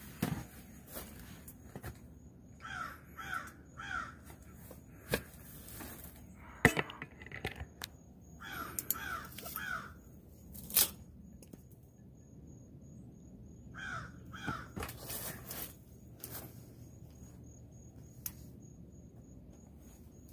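A crow cawing in short runs of three or four calls, three times over, with sharp clicks and knocks from handling the vine and shears, one loud snip coming just before the middle as the shears cut the gourd's stem.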